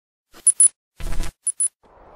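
Cartoon sound effect of a tooth falling out and clinking on a hard surface: two pairs of bright, high-ringing clinks with a short dull knock between them.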